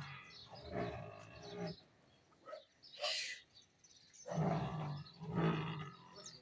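Cattle lowing: three drawn-out, steady-pitched moos, one early and two in quick succession near the end. A short breathy hiss comes about halfway through.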